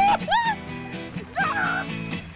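A woman yelping like a dog: two short yips that rise and fall in the first half-second, then a wavering, whimpering howl about a second and a half in, over background music.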